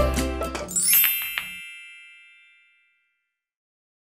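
Close of an intro jingle: a low hit at the start, then a bright chime about a second in that rings out and fades away over about two seconds.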